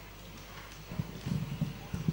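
A handful of soft, irregular low thuds, starting about a second in, as equipment at the keyboard stand is handled and adjusted.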